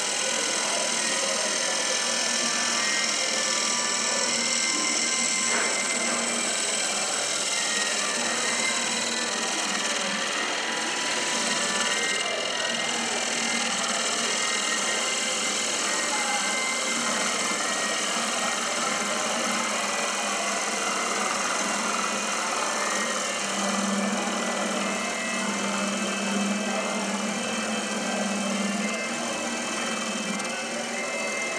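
Wood lathe running while a turning gouge held on the tool rest cuts into a spinning disc of pale wood, throwing shavings: a steady, unbroken cutting noise over the lathe's motor hum.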